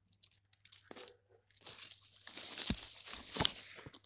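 Dry leaf litter and soil rustling and crunching as they are disturbed: faint scattered crackles at first, growing denser and louder about a second and a half in, with two dull thumps near the end.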